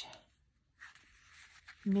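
Faint rustle of a twine-tied stack of printed paper sheets being turned over in the hands, lasting about a second in the middle.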